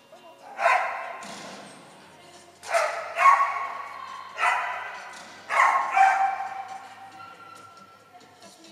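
A dog barking about six times, singly and in quick pairs, each bark echoing on in a large indoor hall.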